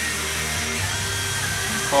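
HO-scale model train running on a DC layout: a steady electric motor hum with a faint whine and rolling wheel noise, a little heavier about a second in.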